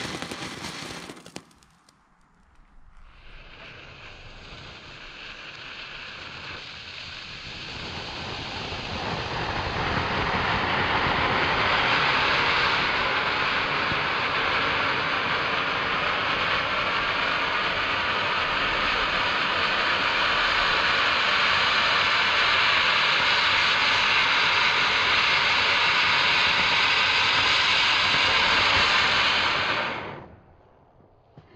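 Nico Super Sprüher firework fountain spraying sparks with a steady hiss. About two seconds in it drops off almost to nothing, then builds up again over several seconds and holds loud before stopping abruptly near the end.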